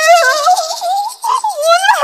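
A woman crying out in a high, quavering, tearful wail, her voice shaking in pitch and breaking off briefly a few times.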